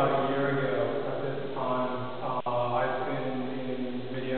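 A man's voice intoning in long held tones, like a chant, in three drawn-out phrases.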